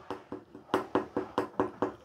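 Wire whisk beating a thick, stiff mung dal batter in a glass bowl, with quick, even knocks of the whisk about six or seven times a second.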